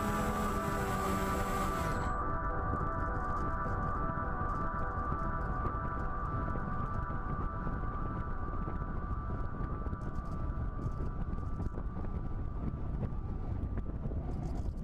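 Wind rushing over the microphone of a camera aboard a flying model plane, under a steady hum of sustained tones; the higher frequencies drop away about two seconds in.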